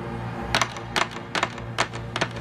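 Film soundtrack: a low, steady music score, joined about half a second in by sharp clacks coming roughly two to three times a second.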